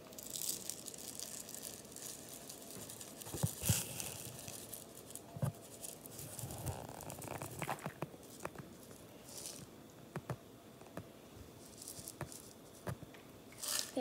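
Rainbow sprinkles rattling and pattering as they are shaken out of a plastic jar onto glazed donuts, in several short bursts with scattered small clicks between.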